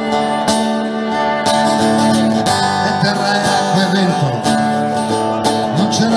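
Live band playing an instrumental passage: guitars strummed about once a second under a violin melody, with some gliding notes in the middle.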